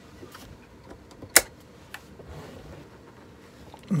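Handling noise from a Rowenta steam generator iron and its plastic base unit being moved on a table: faint rustles and small clicks, with one sharp knock about a second and a half in.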